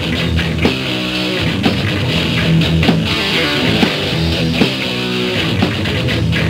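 Rock band playing live, an instrumental passage with distorted electric guitar chords over drums striking at a steady beat, no singing.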